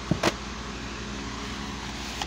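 Two quick clicks of a plastic DVD case being handled, right at the start, over a steady background hum.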